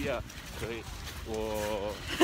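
A person's voice in short utterances, ending in one long drawn-out syllable, over a steady low rumble of wind on the microphone.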